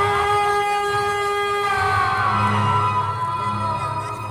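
Stage background music from an electronic keyboard: one long held note with a rich set of overtones that slides slightly lower about halfway through, over a steady low drone.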